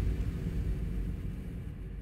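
The low rumbling tail of a logo sting, a deep rumble with faint held tones, fading out toward the end.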